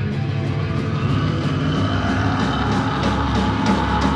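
Live hardcore band playing: distorted electric guitars and bass holding loud sustained chords, with a high ringing guitar note coming in about a second in.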